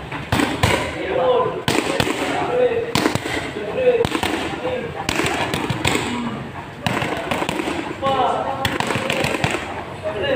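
Boxing gloves smacking focus mitts in quick, irregular combinations of sharp slaps, with voices talking over them.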